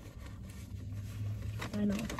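Faint rustling and handling of paper food wrappers and napkins inside a car, over a steady low hum. A voice says "I know" near the end.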